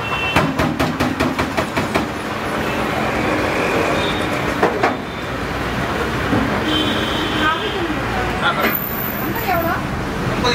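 Steady mechanical noise of street traffic, with engines running, and a rapid run of clicks in the first couple of seconds; voices are heard near the end.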